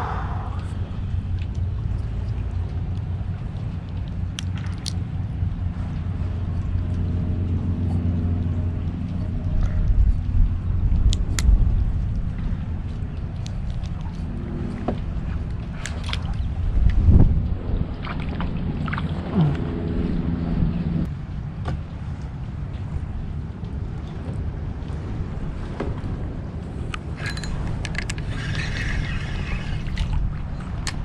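Steady low rumble of wind on the microphone over a kayak on the water, with a few small clicks and knocks from handling the rod and reel. A faint low hum comes in twice for a few seconds.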